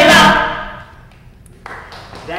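A group of voices singing the last note of a calypso sing-along together. The note stops about half a second in and dies away in the room's echo. A single short knock follows near the end.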